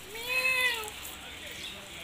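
A single short animal call, rising then falling in pitch and lasting just under a second, over faint steady background hiss.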